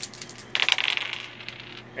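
A handful of four small dice rolled onto a hard tabletop, clattering in a quick burst of clicks for about a second before coming to rest.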